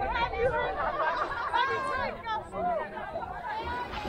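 People talking and chattering, with voices overlapping and no other distinct sound standing out.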